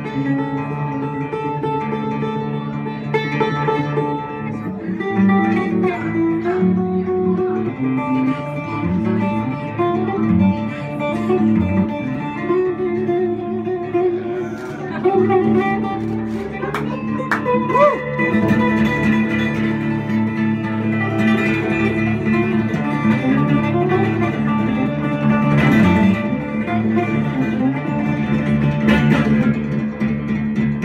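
Cigar box guitar played live: a picked melody moving over a steady low drone, with no break.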